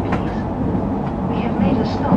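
Narita Express electric train running, heard inside the passenger car as a steady low rumble, with faint indistinct voices over it.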